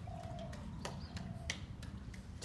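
A faint, thin animal call held at one pitch, heard twice, over light splashing of water.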